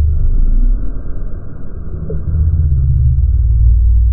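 Deep, muffled rumbling drone with nothing in the upper range. It is an edited-in sound that cuts in and out abruptly, dipping slightly about two seconds in.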